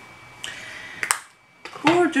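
Makeup items being handled on a table: a short rustle, then sharp clicks as items are closed or set down, with a brief hum of voice at the very end.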